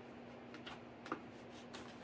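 A few faint clicks and rustles from EPO foam model-airplane tail parts being handled as the stabilizer is worked into its tongue-and-groove slot, the clearest click about a second in, over a steady low hum.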